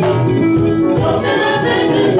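Group of singers singing a gospel song in harmony through hand-held microphones, with a keyboard accompaniment.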